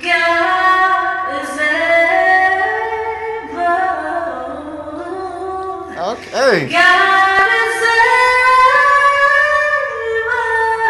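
A young woman singing solo, holding long notes, with a quick run swooping up and down in pitch about six seconds in. Her voice carries the echo of a stairwell.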